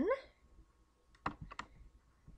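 Two sharp clicks of a computer mouse button, a third of a second apart, a little over a second in.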